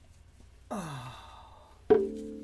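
A voice gives a breathy sound that slides down in pitch, like a sigh, about a second in. Just before the end a guitar chord is struck hard and rings on, the loudest sound here.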